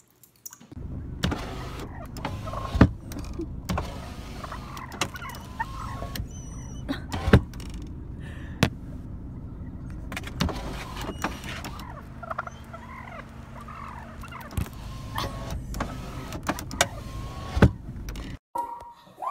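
Wild turkeys calling with short clucks and yelps close beside an idling car, over the engine's low steady hum. Sharp taps or knocks sound every second or two.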